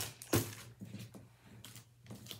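Handling of a beaded necklace in a thin clear plastic bag: a sharp clack about a third of a second in as it is set down on the table, then a few lighter clicks and rustles.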